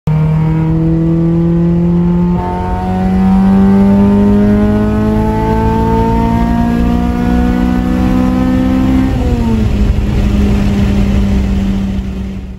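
A Honda Civic Type R's four-cylinder engine, heard from inside the cabin, running loud under acceleration, its note climbing slowly in pitch with a brief dip about two seconds in. About nine seconds in the pitch falls back and settles into a steady drone.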